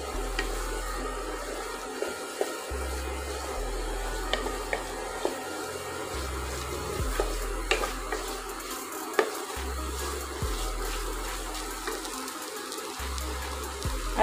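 Wooden spatula stirring and scraping thick moong dal halwa around a nonstick pot, with soft sizzling from the frying paste and occasional sharp taps of the spatula against the pot. Background music with a slow repeating bass runs underneath.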